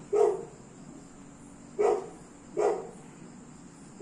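A dog barking three short times: once at the start, then twice in quick succession near the middle.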